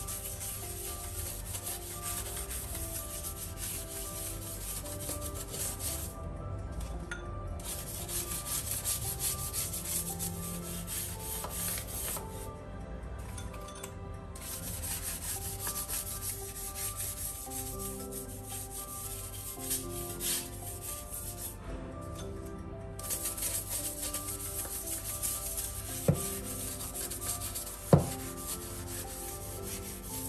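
A small brush scrubbing ceramic wall tiles and grout, a continuous scratchy rubbing, with two sharp taps near the end.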